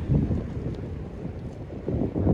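Low wind noise on the microphone from a light sea breeze, over the faint wash of a calm sea.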